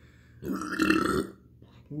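A man's big burp, about a second long, starting about half a second in.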